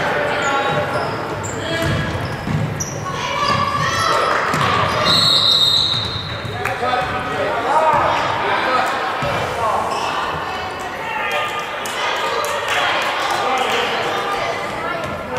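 A basketball being dribbled on a hardwood gym floor, with short bouncing thuds. Players and spectators call out and chatter, echoing in the large gym.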